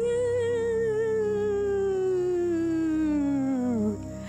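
A woman's long, wavering ghostly "ooooh", starting high and sliding slowly down in pitch until it trails off near the end, over soft background music.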